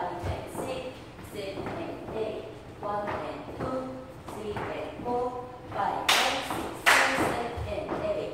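A voice runs on and off over boot steps tapping and thudding on a wooden floor, with two loud sharp hits about six and seven seconds in.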